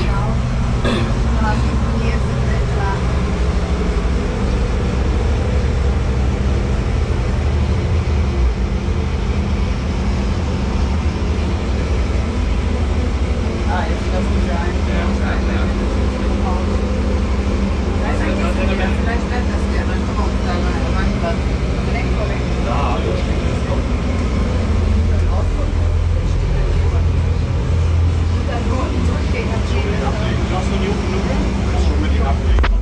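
Steady low mechanical hum and rumble, with faint indistinct voices over it.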